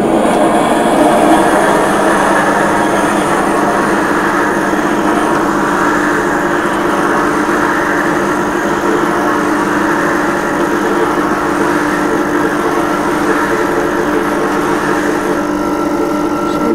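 Duplex steam cleaner running on its high steam setting, a steady hum with hiss as the microfiber head is worked over the carpet.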